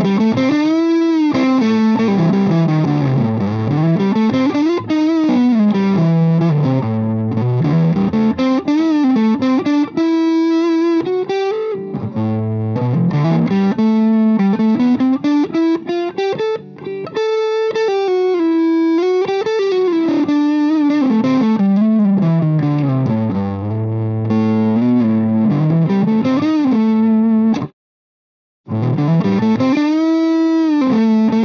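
Heritage H535 semi-hollow electric guitar played through a Lovepedal Blackface Deluxe overdrive pedal into a Marshall JTM45 amp: a sustained overdriven lead line with wide string bends and vibrato. The sound cuts out for about a second near the end, then the playing resumes.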